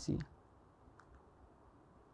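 A man's voice finishing a word, then a pause of near silence with two faint short clicks about a second in.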